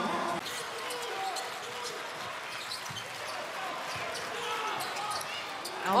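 Basketball game sound in an arena: steady crowd noise with a ball bouncing on the hardwood court several times.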